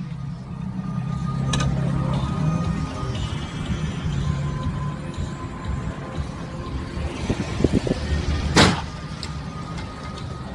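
Car interior noise: the engine running with a steady low hum while the car moves in slow traffic, and a single sharp knock about eight and a half seconds in.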